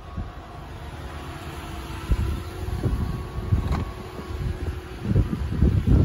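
Steady low hum of an idling SUV, fading out about four and a half seconds in, with irregular low thumps of wind and handling noise on the microphone growing near the end.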